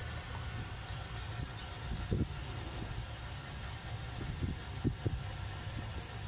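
Steady low mechanical hum, with a few faint short knocks.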